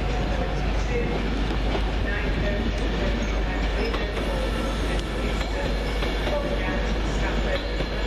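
Coaches of a departing passenger train rolling away along the rails, a steady sound of wheels running on the track.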